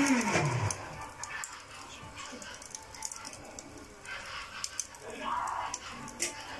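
Charcoal lumps catching over a gas burner, with faint scattered crackles and pops over a low hiss. A pitched whining sound falls away in the first second.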